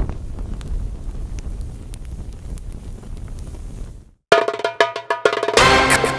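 Intro sound effect of fire: a low rumble with faint crackles, dying away to a brief silence. Just after four seconds in, music starts with pitched percussive notes.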